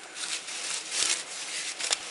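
Rustling of a paper rag handled close by, in short scratchy spells, with a light click about a second in and another near the end.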